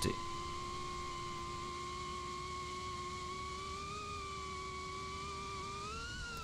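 FPV cinewhoop drone's motors and propellers in flight, a steady whine whose pitch lifts slightly about four seconds in and again near the end as the throttle changes.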